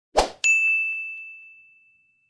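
A brief burst, then a single bright ding, a bell-like chime sound effect that rings and fades away over about a second and a half, marking the 'like' counter ticking up in an animated end screen.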